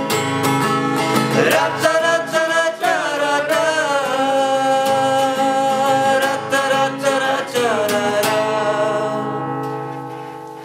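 Acoustic guitar strummed steadily under male voices singing long held notes, closing out a country song. The strumming and singing stop about eight and a half seconds in, and the guitar rings away to quiet.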